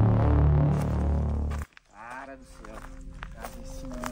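A loud transition sound-effect hit with a long, deep, many-toned ringing decay, cut off abruptly about one and a half seconds in. After a short gap, quieter pitched sounds follow.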